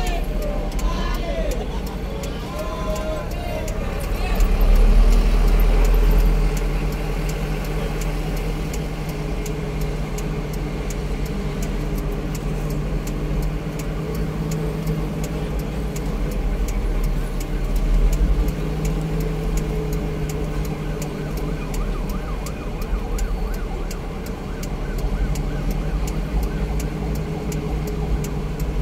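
Car engine running and road noise heard from inside a moving vehicle, a steady low rumble that swells for a couple of seconds about four seconds in.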